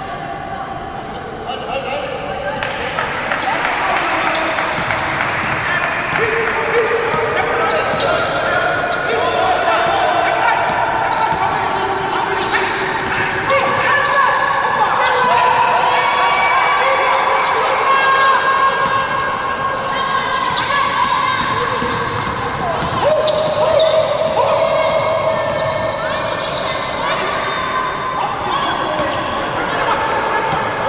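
A basketball being dribbled and bounced on a hardwood court during live play, irregular knocks throughout. Players and coaches call out over it, and the sound echoes in a large hall.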